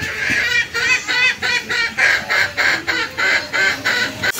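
A duck quacking in a fast run of short calls, about four a second.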